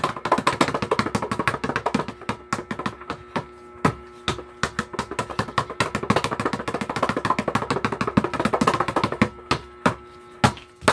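A basketball dribbled rapidly and low on a tiled floor: a quick, irregular run of bounces, several a second, with a steady hum underneath.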